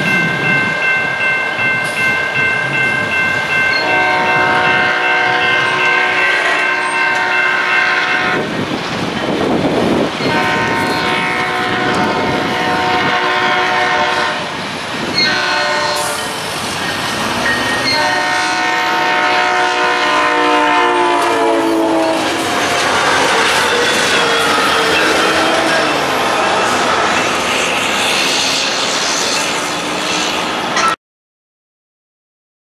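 SunRail commuter train sounding its horn for a grade crossing in several long blasts. The horn's pitch drops as the train comes past, then the rumble and wheel clatter of the cars going by take over. A crossing bell rings steadily over the first several seconds.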